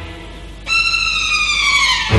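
A single high, pitched tone, synthetic-sounding, comes in about two-thirds of a second in. It glides slowly and steadily downward in pitch, then cuts off suddenly.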